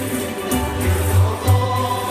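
Live Canarian folk music: a group singing together to accordion and guitars, with drum and hand-percussion strikes keeping a steady beat.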